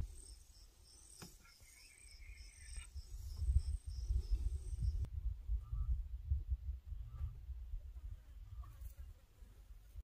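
Insects chirping in an even pulsed trill over a thin high whine, with a brief warbling call in the middle, all stopping suddenly about five seconds in. A low rumble runs underneath and carries on after, with a few faint short calls.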